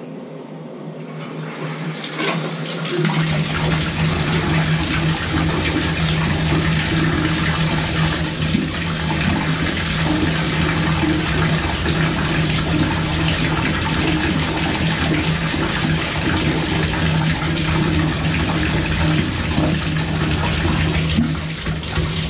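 Water jetting from an open copper tub-spout stub into a bathtub, blowing debris out of a newly installed Moen Posi-Temp shower valve. The rush builds over the first few seconds, then runs steadily with a low hum under it.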